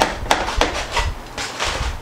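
Knife and fork cutting through cooked ribs in a crumpled aluminium-foil wrap: a series of short crackles and scrapes of foil and utensils, with a longer one near the end.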